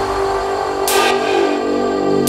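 Intro of a neurofunk drum and bass track: layered synth tones with one white-noise swish about a second in, the deep bass dropping away and returning near the end.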